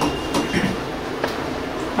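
Steady low rumbling room noise with a few faint, light clicks.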